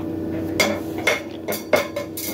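A quick series of about five sharp knocks or clinks of hard objects, some with a short metallic ring, over a steady hum.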